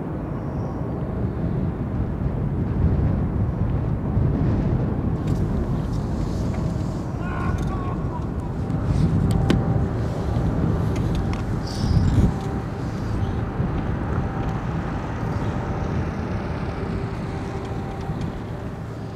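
Shoreline harbour ambience: wind rumbling unevenly on the microphone, with a faint steady engine hum from the nearby ships and tug in the second half.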